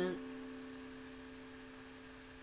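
A D7 chord voiced with C on the bottom and A on top, held on a digital piano and slowly dying away; two notes ring on most clearly as it fades.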